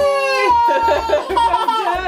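A young child's long, drawn-out vocal cry, held at one high pitch for about a second and then wavering, over background music with a steady beat.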